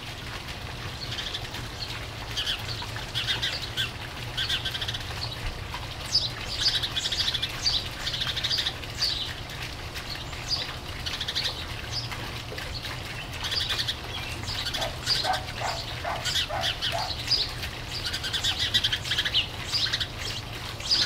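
Birds chirping repeatedly in short notes, growing busier after the first few seconds, over a steady low hum.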